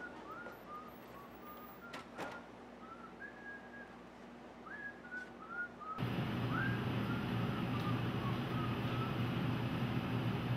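A person whistling a casual tune in short, sliding notes, fairly quiet. A couple of light clicks come about two seconds in, and about six seconds in a louder steady background hum comes in under the whistling, which trails off soon after.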